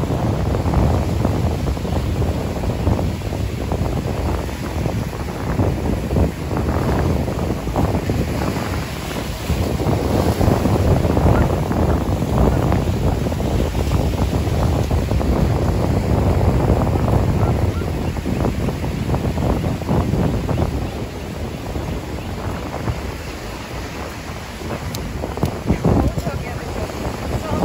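Strong wind buffeting the microphone over Pacific surf breaking on the rocks and washing through the shallows, a loud steady rush that eases slightly near the end.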